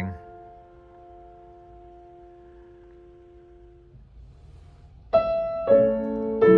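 1936 Blüthner Style IVa baby grand piano: a chord held and ringing as it slowly fades for about four seconds, then after a brief pause new chords are struck twice near the end.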